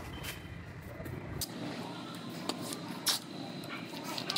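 Masking tape being pulled off the roll and pressed onto a car's body panel, with plastic masking sheet rustling: a few short, sharp rips and crackles.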